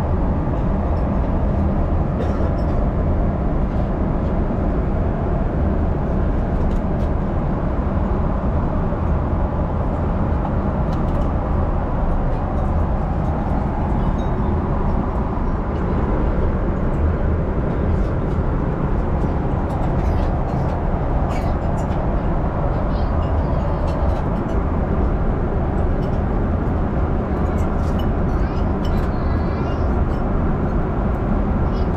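Steady, low cabin noise of a jet airliner in flight: an even drone of engines and airflow. It is joined by a few faint clicks in the second half.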